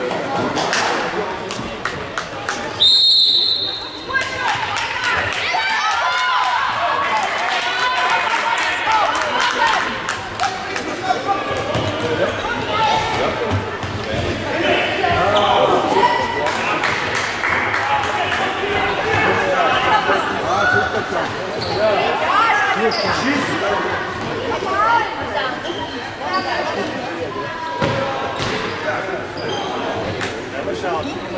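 A referee's whistle blows once, briefly, about three seconds in to start play. A futsal ball is then kicked and bounced on the sports-hall floor over shouting voices, echoing in the large hall.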